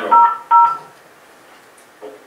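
Two short telephone keypad tones in quick succession in the first second, the same two-tone pitch both times, as if one key were pressed twice.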